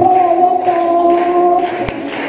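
A girl singing one long held note into a microphone, which ends near the end, with a small guitar and shaken percussion keeping time behind her.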